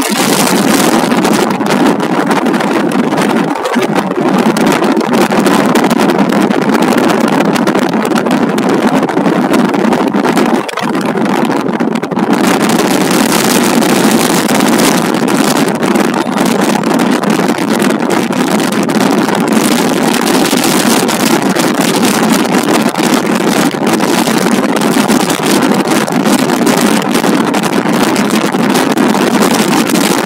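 Loud, steady wind rushing over the microphone of a camera held out of a moving vehicle, mixed with the vehicle's road noise.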